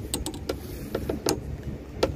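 Light clicks and knocks of a PVC pipe being handled against a stainless-steel boat rail, a handful in the first second or so, over a low background rumble.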